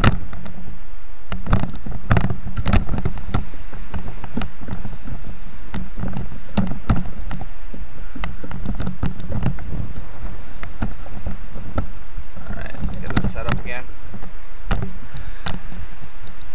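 Handling noise from a camera tripod whose legs are being collapsed and reset: a string of irregular clicks and knocks over a steady background noise.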